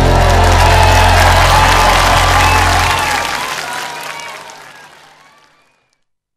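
A live band's closing chord rings out and stops about three seconds in, while an audience applauds and cheers. The whole sound then fades out to silence shortly before the end.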